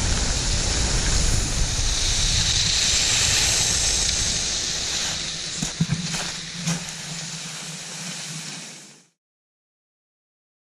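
Wind buffeting an action camera's microphone over the hiss of skis sliding on packed snow, with a couple of light knocks past the middle; the sound fades and cuts off about nine seconds in.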